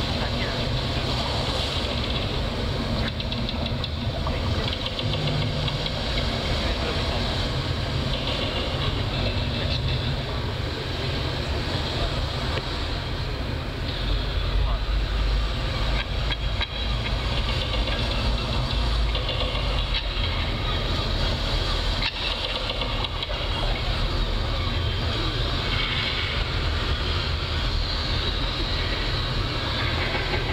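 A sludge/doom metal band playing live through a PA: a loud, steady, droning wall of amplified guitar and bass with a heavy low end, which swells about halfway through.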